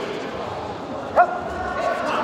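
A single loud shout, as a taekwondo fighter's yell or a referee's call, about a second in. It rises sharply in pitch and is then held, over the murmur of a large sports hall.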